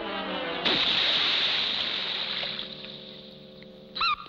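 Cartoon orchestral score running down in a descending figure, then about two-thirds of a second in a loud splash of something plunging into the sea. The splash dies away over about two seconds, leaving quiet held notes of the score.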